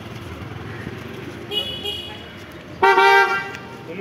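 Street traffic with a motorbike passing close by, a short high toot about a second and a half in, then a louder, steady vehicle horn honk near the end.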